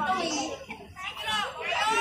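Children in a crowd shouting and calling out in high voices, with a short lull about a second in and louder calls after it.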